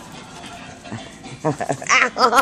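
A small dog vocalizing: a short, wavering, whine-like call about one and a half seconds in.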